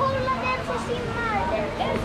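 Several voices talking over one another, with a steady low hum underneath.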